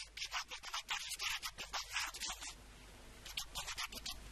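A man's voice speaking into a microphone, so badly degraded that it comes through only as a thin, harsh scratching with no low end, broken into quick syllable-like bursts, with a short stretch of steady hiss a little past the middle.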